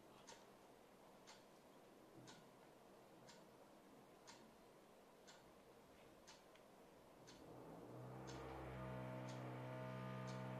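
A clock ticking evenly, about once a second, in a quiet room. From about eight seconds in, a steady low hum comes up underneath.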